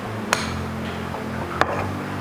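A metal spoon clinks twice against a glass bowl while cooked rice is scooped out, over steady background music.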